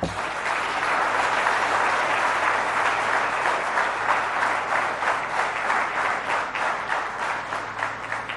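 A large seated audience applauding: dense, steady clapping that eases off slightly near the end.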